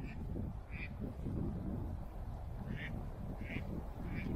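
Ducks quacking on a lake, four short calls spread through the few seconds, over a steady low rumble.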